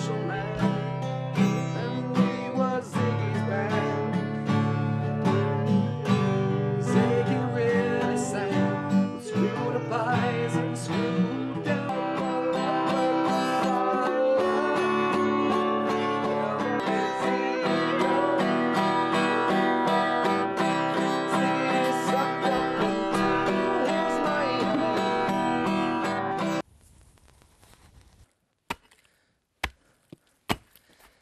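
Acoustic guitar strummed in chords, with a voice singing along at times. The music cuts off abruptly near the end, followed by a few sharp knocks.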